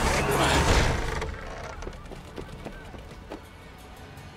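A loud rushing noise in the first second as a hoist rope whips loose over the timber, then dying away to faint scattered knocks, with film score underneath.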